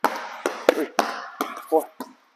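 A basketball dribbled hard and fast on an indoor court floor, a quick run of sharp bounces.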